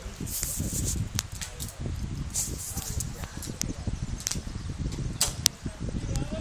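Wind buffeting the phone microphone in an irregular low rumble, with scattered sharp clicks of metal climbing hardware on the rope.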